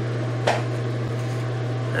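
A steady low hum, like a fan or other machine running in a small room. About half a second in there is one brief, sharp sound that drops quickly in pitch.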